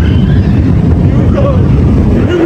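Expedition Everest roller coaster train rolling along its track, heard from the front car as a loud, steady low rumble.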